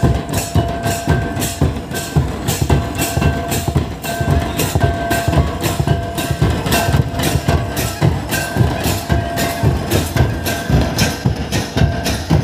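A group of double-headed drums played by hand in a quick, even dance rhythm of about three to four strokes a second, with short high held notes recurring over the beat.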